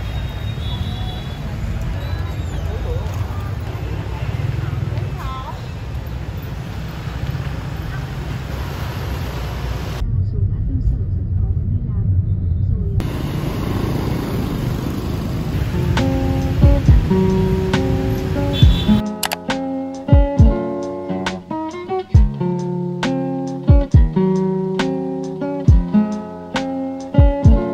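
City street sound: a steady rumble of motorbike traffic with voices of passers-by. In the last third a plucked acoustic guitar tune comes in and takes over.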